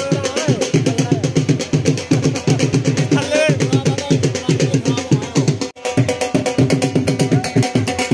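Drumming with a fast, even beat, with a brief wavering pitched sound about three seconds in; the sound drops out for an instant a little past the middle.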